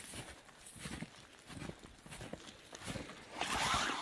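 Footsteps crunching in snow, several uneven steps, with a longer, louder rustle near the end.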